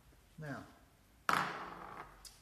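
A single sharp knock, the loudest sound here, that rings off briefly: the empty plastic scattering bowl being set down hard.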